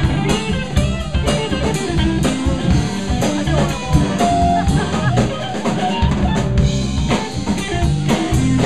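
Live funk band playing: a drum kit keeps a steady groove under electric guitar and a low bass line.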